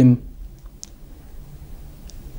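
A man's voice finishes a phrase right at the start, then a pause of quiet room tone with a single faint mouth click a little under a second in.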